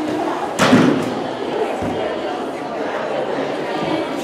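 A single heavy thud a little over half a second in, from a gymnast's vault hitting the springboard, table and landing mat, over steady crowd chatter in a large gym hall.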